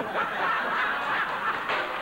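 Studio audience laughing, a steady wash of many voices with no single speaker standing out.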